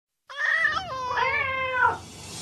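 A cat meowing: one drawn-out call that wavers up and down in pitch and drops away at the end.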